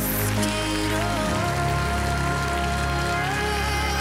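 Live band playing a slow pop ballad. A cymbal crash comes right at the start, then a long held melody note over sustained keys and bass, with audience clapping as a hiss underneath.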